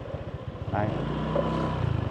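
A motorbike engine running steadily at low riding speed, its note shifting slightly about a second in.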